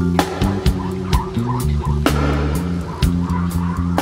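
Reggae band playing live through the PA, an instrumental passage with no singing: a deep, moving bass line under drums with a steady hi-hat and sharp hits about once a second, with acoustic guitar in the band.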